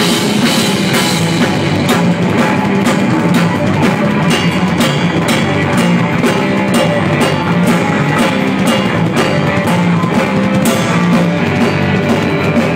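Live rock band playing loudly: a drum kit keeps a steady beat of regular drum and cymbal hits under electric guitar.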